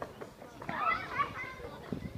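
Indistinct high-pitched voices chattering in the background, loudest from just after half a second in to past the middle.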